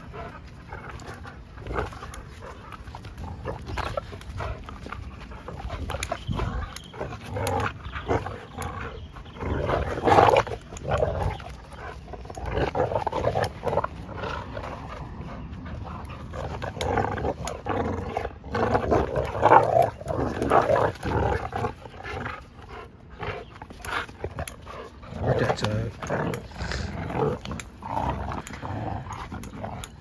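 Two pit-bull-type dogs growling as they play tug-of-war over a rope toy, in uneven bursts that are loudest about ten seconds in and around twenty seconds.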